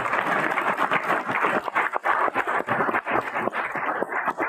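A roomful of people applauding: dense, steady clapping.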